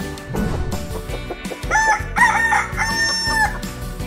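A rooster crowing once, a cock-a-doodle-doo about two seconds long with its last note held, over an upbeat intro jingle.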